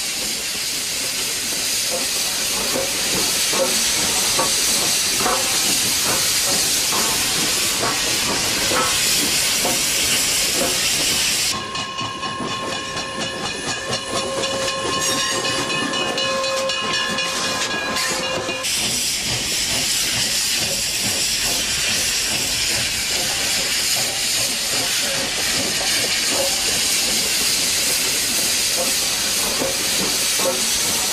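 Steam locomotive hissing steadily with scattered short knocks, and a steam whistle blowing one long steady note for about seven seconds partway through.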